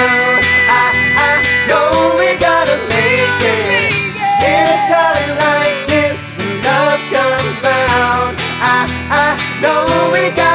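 Live acoustic pop song: two acoustic guitars strummed under several male voices singing together.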